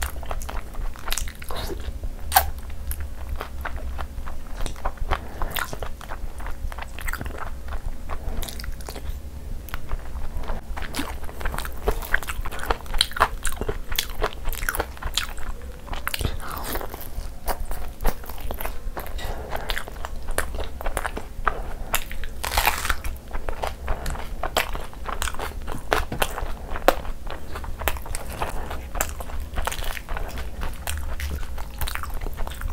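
Close-miked mukbang eating sounds: a person chewing mouthfuls of gravy-soaked chicken curry eaten by hand. Irregular wet clicks and smacks of the mouth and fingers run throughout, over a steady low hum.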